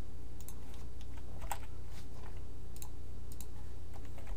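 Typing on a computer keyboard: a short, irregular run of keystrokes entering a word. A steady low hum sits underneath.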